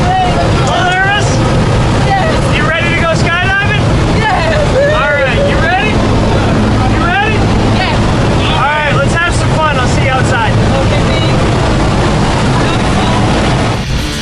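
Steady loud drone of a skydiving jump plane's engine and propeller heard inside the cabin, with people's voices calling out over it.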